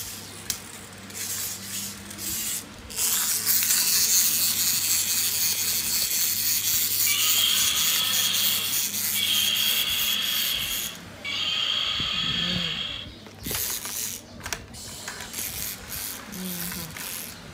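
Battery-powered toy dinosaur's small motor and plastic gearbox running with a ratcheting, grinding noise, loud from about three seconds in and stopping about thirteen seconds in, with a steady high whine in its middle part.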